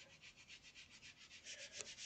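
Faint, quick rubbing of a bare hand over fabric laid on a gel printing plate, pressing down a ghost print of the leftover paint. The strokes grow a little louder near the end.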